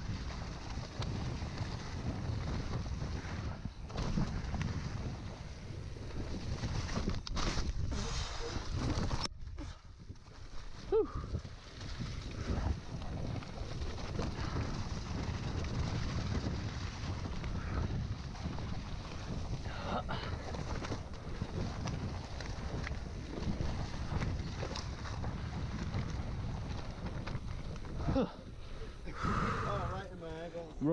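Mountain bike ridden along a muddy, leaf-covered woodland trail: steady wind noise on the camera microphone over the rumble of tyres on the dirt, with a few brief knocks from the bike.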